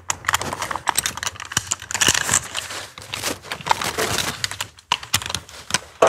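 An irregular run of small metallic clicks and rattles from rope-access hardware, carabiners and a rope descender, being handled while the rope is fed into the descender.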